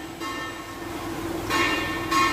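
Sustained bell-like ringing tones, with a fresh strike about one and a half seconds in.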